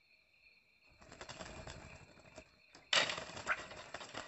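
A bulbul's wings flapping at a bamboo trap cage, in rough flutters from about a second in and a sudden loud burst of flapping near three seconds. A steady high insect drone sounds underneath.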